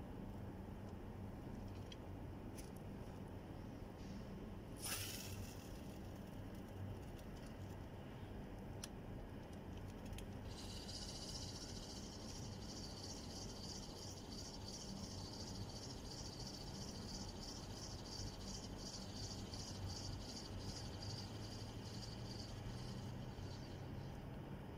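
A fishing line whipping out on a lure cast, a single sharp swish about five seconds in, then a fishing reel being cranked to retrieve the lure. The reel makes a steady, fast, high rattling whir that starts about ten seconds in and stops just before the end.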